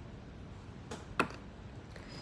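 Ceramic lid set back onto a ceramic jar: two light clinks about a second in, the second one sharper.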